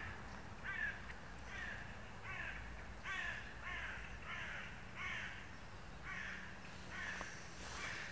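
A bird calling over and over in a steady series, about eleven short calls, roughly one every two-thirds of a second.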